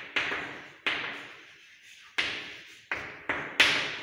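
Chalk tapping and scraping on a blackboard as words are written: about six sharp strokes, each fading quickly, the last near the end the loudest.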